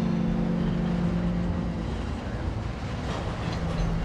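Freight train of railway tank cars rolling past, a steady low rumble of wheels on rail.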